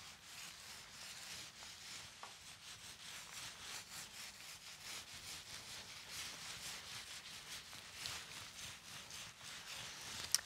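Small resin roller worked back and forth over fibreglass mat wetted with polyester resin, a faint, rhythmic rubbing with each stroke.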